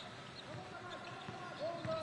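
Basketball being dribbled on a hardwood court, with faint distant shouts from players on the court.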